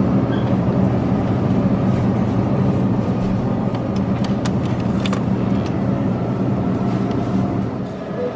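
Steady low hum and noise of a supermarket produce section, with a few faint clicks as a plastic clamshell of basil is taken off its hanging peg around the middle.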